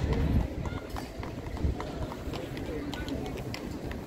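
Horse hooves clip-clopping on cobblestones: an irregular patter of sharp hoof strikes, over a low rumble that is strongest in the first half second.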